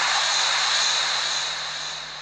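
Dramatic whoosh sound effect: a loud rushing noise with a faint steady high whistle, slowly fading.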